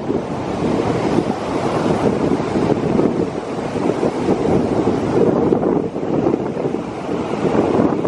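Surf breaking and washing up a sandy beach, with heavy wind buffeting the microphone; the rushing noise swells and eases as the waves come in.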